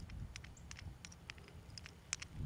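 Faint, scattered small clicks and ticks of a metal solar-panel mid clamp and its bolt being turned over in the hand, over a low rumble.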